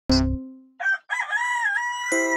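A rooster crowing: a short note, then a long wavering call that levels off and holds near the end. It comes after a struck note with a deep thump right at the start.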